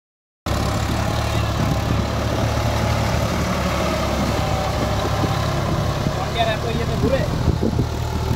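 Massey Ferguson tractor's diesel engine running steadily under load, pulling a rotary tiller through flooded paddy mud. Voices come in near the end.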